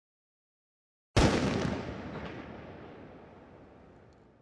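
A single loud gunshot about a second in, its echo dying away slowly over about three seconds, out of dead silence.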